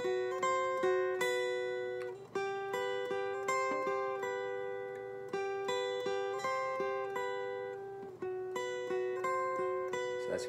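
Steel-string acoustic guitar playing a two-note melody in thirds high on the top strings: plucked notes step above a repeated lower note. The phrase starts over about two seconds in and again about eight seconds in.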